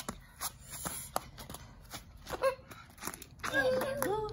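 Scattered light clicks and taps, with a child's short vocal sound about two and a half seconds in and a longer, gliding one near the end.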